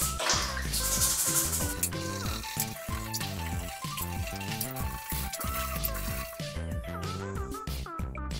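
Background music with a steady beat over water splashing in a plastic basin as a sneaker is scrubbed with a toothbrush; the music is the louder sound.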